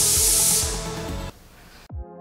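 Compressed-air spray gun hissing steadily as it sprays udder spray, then cutting off sharply a little over a second in. Background music plays underneath.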